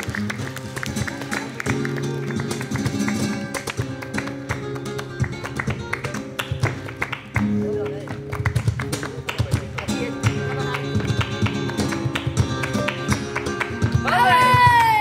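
Flamenco guitar playing a soleá, strummed and plucked chords with many sharp percussive taps over them throughout.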